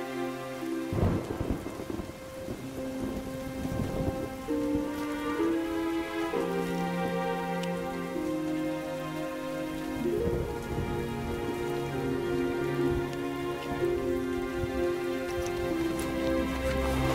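Steady rain with rolls of thunder, loudest about a second in and again around the middle, under slow background music of held chords.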